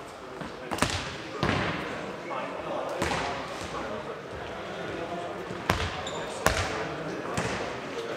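Nohejbal ball being kicked and bouncing on a wooden sports-hall floor during a rally: about six sharp thuds, each ringing on in the large hall, with players' voices.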